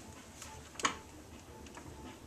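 Quiet ticking from a foot-treadle potter's wheel turning while a porcelain cup is shaped on it with ribs. There are a few sharp clicks, the clearest about half a second and a second in.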